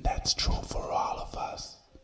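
A person whispering, breathy and hissy, through most of the two seconds.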